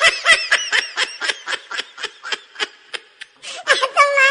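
Laughter in quick, high-pitched bursts, about four a second. It eases off past the middle and picks up again near the end.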